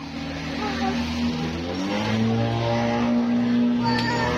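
A motor vehicle's engine running close by, its pitch stepping up about halfway through as the revs rise.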